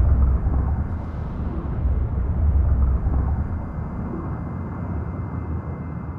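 A low, steady rumble with a faint thin high tone above it, slowly fading away.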